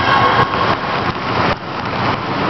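Indistinct, echoing noise of children playing in a sports hall, with voices and movement blurred together. The sound drops and changes abruptly about one and a half seconds in.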